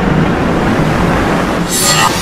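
Dramatic soundtrack effects: a loud, dense rushing noise over a pulsing low beat, with a high screeching sweep coming in near the end.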